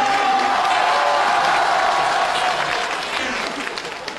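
A studio audience applauding, steady at first and dying away in the last second or so.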